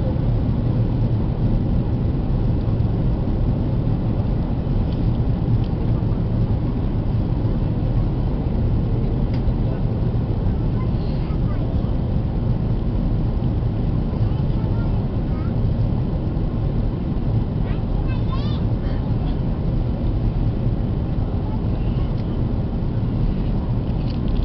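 Airbus A330 cabin noise in flight: a steady, loud low rumble of the engines and airflow. Faint voices from elsewhere in the cabin come through now and then.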